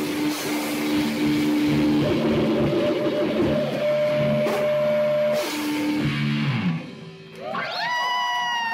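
Live rock band playing distorted electric guitar, keyboard and drum kit, with held notes over the chords. The playing drops away about seven seconds in, and a long high cry rises and holds near the end.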